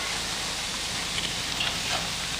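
A steady hiss of background noise, like light rain, with a few faint clicks.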